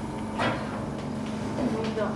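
Clear plastic induction box being handled, with a short knock or scrape about half a second in and another near the end, over a steady low hum.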